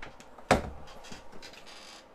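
Hinged plastic lid of a thermoelectric cooler swung open, with one sharp clunk about half a second in, then a few faint handling ticks.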